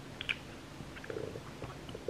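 Faint lip smacks and small wet mouth clicks as lips are pressed and rubbed together to spread freshly applied lip colour, with a brief low hum about a second in.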